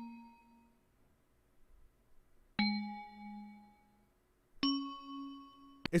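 Synthesized 'vibrant bells' preset from the Purity plugin playing single bell notes. The ring of one note fades out, then two more notes sound about two seconds apart, each at a different pitch, and each rings and fades.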